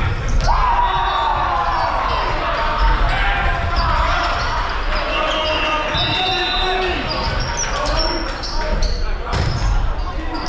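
Indoor volleyball rally in a reverberant gymnasium: players and spectators calling and shouting, with a few sharp ball hits, one near the start and another near the end, and brief squeaks of sneakers on the hardwood court.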